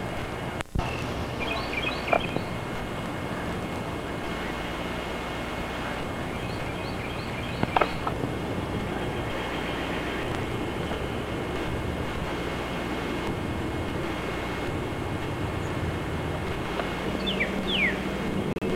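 Steady outdoor background noise with a few faint, short, high bird chirps scattered through it, and some sliding calls near the end.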